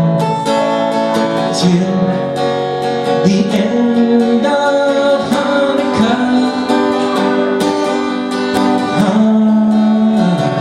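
Ovation acoustic guitar strummed in a steady rhythm, with chord changes every second or two, accompanying a man singing a song.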